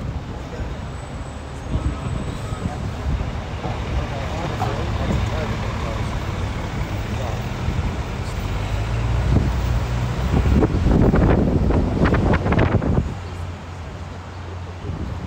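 Street traffic and the rumble of a moving vehicle's engine, heard from a sightseeing bus. It grows louder in the second half, with a loud surge of traffic noise for a few seconds near the end.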